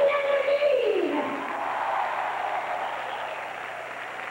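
Studio audience applauding, fading slowly, with one drawn-out voice call at the start that holds its pitch and then slides down.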